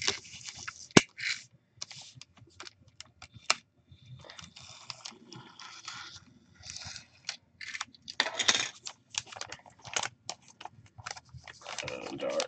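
Foil pouch crinkling as it is handled, then torn open, with a strip ripped off its top: irregular crackles and rustles, a sharp snap about a second in, and the loudest, longest tear around eight seconds in.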